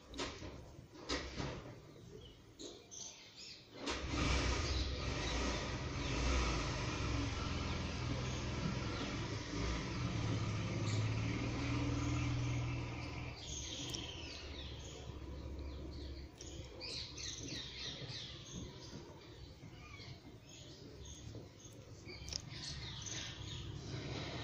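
A low motor-like rumble with a hiss comes in suddenly about four seconds in and fades away over roughly ten seconds. Then scattered bird chirps follow. Before the rumble there are only a few faint clicks.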